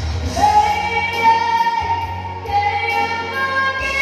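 A 13-year-old girl singing a ballad into a handheld microphone over backing music, holding two long notes of more than a second each.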